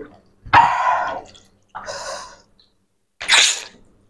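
Three short breathy sounds from a person eating, the last a sharp hiss.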